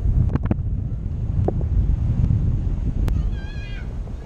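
Wind rushing and buffeting over the camera microphone in paraglider flight, a steady low rumble, with a few sharp clicks early on. Near the end comes one short high-pitched call with an arching pitch.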